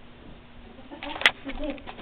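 Rustling and handling noises about a second in, with one sharp click, as a T-shirt is laid out on the carpet and the camera is moved. A faint, short vocal sound follows near the end.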